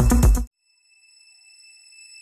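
Electronic dance music with a steady thumping beat, cut off abruptly about half a second in. Then near silence, out of which a faint, steady high-pitched tone slowly grows.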